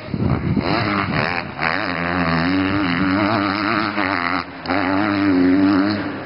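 Dirt bike engine revving under throttle, its pitch wavering up and down, with a brief drop in level about four and a half seconds in.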